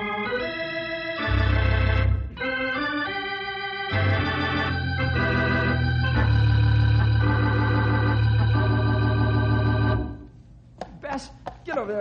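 Organ music bridge: a short phrase of sustained chords moving through several changes, with deep bass notes underneath for most of it, ending about ten seconds in. It marks a scene change in the radio drama.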